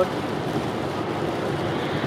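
Road noise inside a moving car: a steady rush of tyres on a wet highway.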